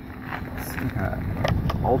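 A few light clicks and taps of hands handling the plastic body shell of an electric RC buggy, over a low rumble of wind on the microphone.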